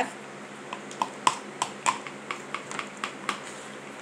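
Light, irregular clicks and taps of plastic containers and utensils being handled, about three a second, over a faint steady hum.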